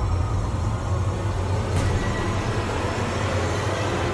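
Dramatic background score: a steady low rumbling drone with faint sustained tones over it, and a brief swish about two seconds in.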